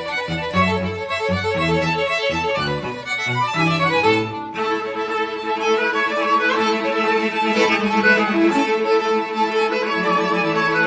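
String quartet of two violins, viola and cello playing bowed. The low part moves in short, quickly changing notes for about the first four seconds, then the quartet settles into sustained held chords.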